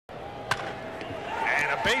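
A single crack of a wooden baseball bat striking a pitched ball about half a second in, heard through a TV broadcast, followed by rising stadium background noise and the announcer beginning to call the base hit.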